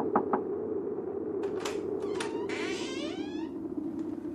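Sound effects of knocking on a wooden door: three quick knocks, then the door opens with a creak that falls in pitch, over a steady low background noise.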